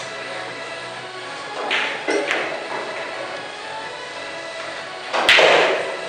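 Pool balls clacking over steady background music: a pair of sharp clicks about two seconds in, and a louder knock with a short clatter a little after five seconds.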